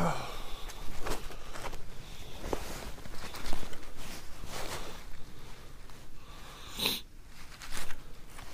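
Gloved hands handling a freshly caught bluegill: scattered rustles and small knocks, with a short hiss about seven seconds in.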